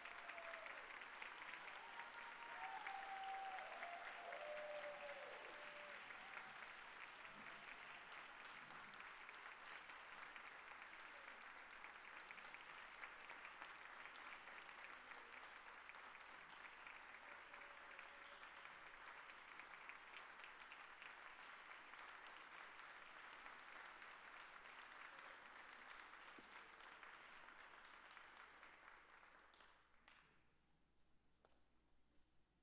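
Concert audience applauding, faint and steady, tapering off near the end.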